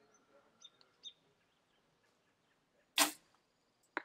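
Compound bow shot: one loud, short snap of the string and limbs as the arrow is released, about three seconds in. About a second later comes a single short, sharp knock, with faint bird chirps in the quiet before the shot.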